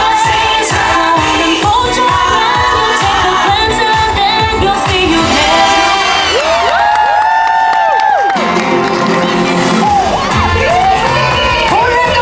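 Upbeat pop show song with singing over a steady beat, played loud through outdoor loudspeakers. About six seconds in, the beat drops out for a held sung chord lasting nearly two seconds, then the beat comes back.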